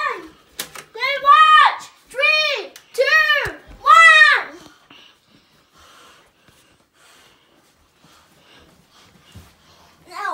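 A child's voice making four drawn-out, high-pitched calls in quick succession, each rising and then falling in pitch, with a laugh just before them; after about five seconds it goes quiet apart from faint background sound.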